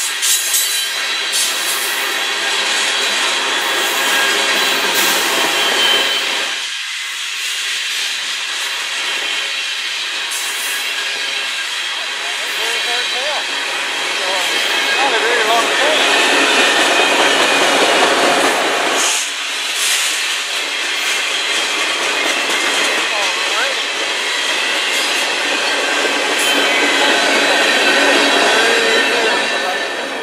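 Freight cars of a long manifest train rolling past: steel wheels running and clattering over the rails, with thin, steady high-pitched squeals from the wheels on the rails.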